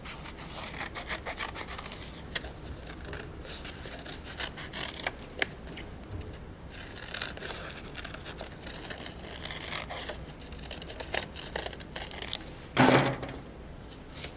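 Scissors cutting through a folded sheet of paper along a drawn bat-wing outline: a long run of irregular crisp snips and paper rasping, easing off briefly about six seconds in. Near the end comes a louder paper rustle as the cut piece is handled and opened out.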